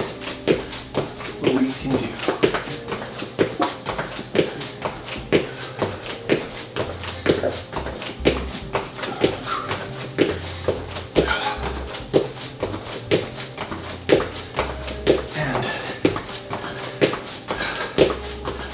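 Sneakers landing on a floor mat in the steady rhythm of press jacks, about two landings a second, with the thuds and shuffles of each jump.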